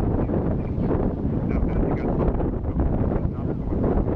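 Wind buffeting the microphone: a steady, loud low rumble of noise.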